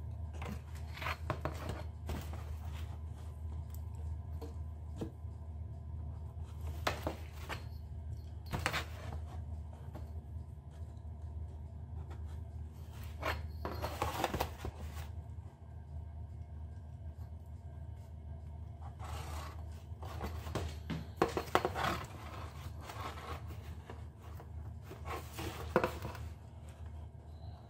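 Short scratchy strokes of a pen marking corrugated cardboard and a steel ruler sliding and scraping across it, several separate bursts with the longest about halfway through, over a steady low hum.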